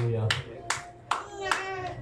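Hand claps, about four of them at roughly two to three a second.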